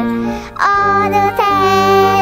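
A child singing a Korean children's song over musical accompaniment. A held note ends about half a second in, and a new note starts with a quick upward slide and is held.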